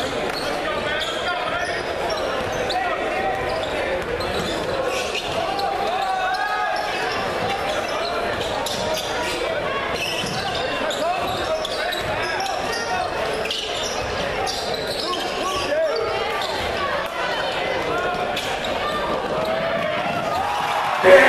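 Crowd of spectators in a gymnasium talking and calling out at a steady level, with a basketball bouncing on the hardwood floor, all echoing in the large hall.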